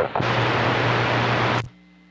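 Radio receiver static: an even hiss with a steady low hum from the speaker after the other station unkeys, cut off suddenly near the end as the transmitter is keyed and the receive audio drops out.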